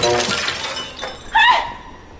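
The glass of a framed painting shattering on a hard stone floor: a sudden crash at the start that fades over about a second. A short vocal cry follows about a second and a half in.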